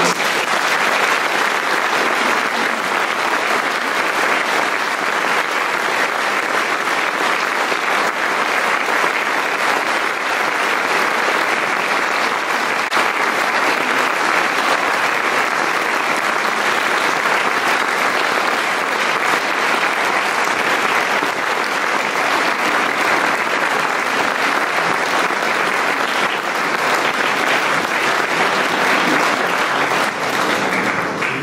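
Audience applauding: steady, sustained clapping from a large crowd.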